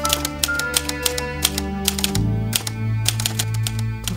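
Portable manual typewriter keys clacking in quick, irregular runs of strokes. Soft background music with held notes plays underneath and changes chord about two seconds in.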